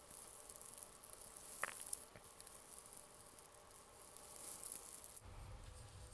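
Near silence: faint room tone and hiss, with two faint brief sounds about one and a half to two seconds in.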